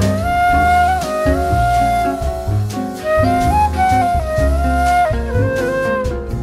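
Jazz flute solo: a concert flute plays a melody of long held notes, moving in small steps, over the band's bass, guitar and drums.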